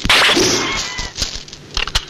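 Kung fu film fight sound effects: a sharp hit right at the start followed by a swish lasting about half a second, then a few short, sharp strikes in the second second.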